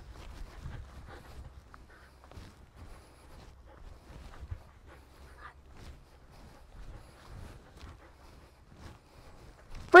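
Faint, irregular footsteps of a person and a dog walking on grass.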